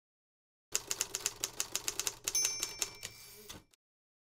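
Typewriter sound effect: a run of quick key clacks, about seven a second, starting just under a second in, with a bell ding about halfway through and a final clack before it stops.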